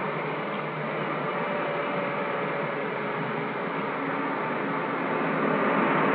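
Steady hiss of an old film soundtrack, with a few faint held tones coming and going underneath.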